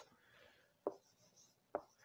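Faint marker-on-whiteboard sounds: two short taps about a second apart as the pen meets the board, over quiet room tone.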